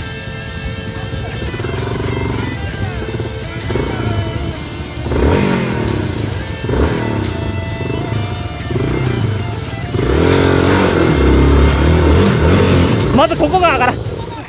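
Off-road motorcycle engine running and revving under background music, with voices mixed in; it grows louder about ten seconds in, and the pitch rises quickly a few times near the end.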